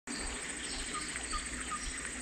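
Wild birds calling at the waterside: a few short, repeated high chirps about a second in, with fainter higher calls around them, over a steady low background hum.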